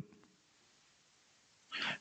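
Near silence, then a short intake of breath by the man at the microphone near the end, just before he speaks again.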